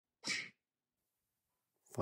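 A single short, sharp burst of breath from a person, about a quarter second in.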